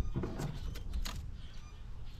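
Several sharp clicks and clatters in the first second or so as gear on a kayak is handled, over a steady low rumble.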